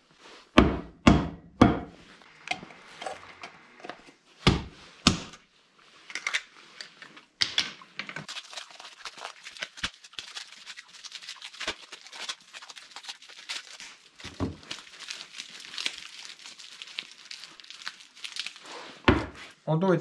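Work gloves rustling and crinkling as they are rubbed and pulled at, for most of the time from a few seconds in, with several knocks of things set down on a wooden workbench: a cluster near the start and single ones later.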